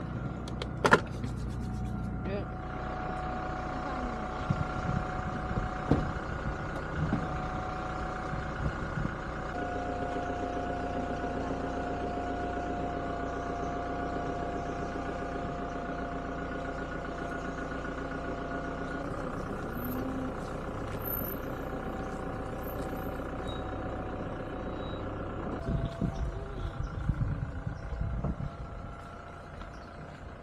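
Toyota SUV engine idling steadily, its hum stepping slightly in pitch a couple of times. A sharp thump about a second in, the loudest sound, fits the car door being shut.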